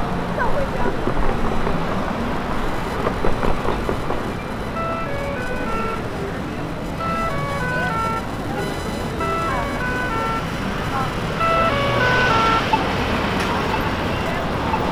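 Busy downtown intersection ambience: traffic and the voices of passing pedestrians. From about four seconds in, a jingle-like tune of short, clear notes plays over it and stops shortly before the end.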